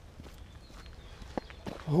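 Footsteps walking on a wet dirt path, quiet and steady.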